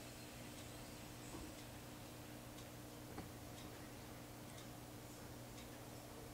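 Near silence: room tone with a faint steady hum and a few faint ticks.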